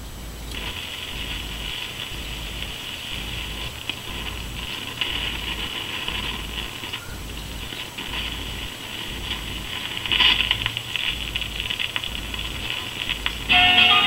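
Zenith portable record player switched on: steady hiss and a low pulsing hum from its amplifier through the built-in speaker. About ten seconds in, the stylus is set down on the spinning 45 with a brief rough scrape and runs into the groove. The record's first guitar notes come in just before the end.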